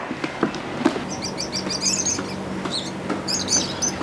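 Small birds chirping in quick runs of short high notes, in two bouts, over a steady low hum.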